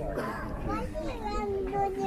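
People talking, with children's voices among them.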